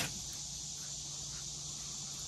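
Steady high-pitched insect chorus, crickets, with a brief knock at the very start.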